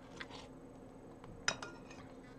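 A metal spoon clinking against a ceramic plate of runny oatmeal: one sharp clink about one and a half seconds in, with a few fainter taps and soft eating sounds around it.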